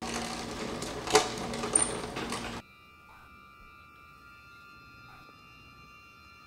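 Film soundtrack ambience: a dense hiss with one sharp click about a second in. It cuts off abruptly after about two and a half seconds to a faint, steady hum of several held tones.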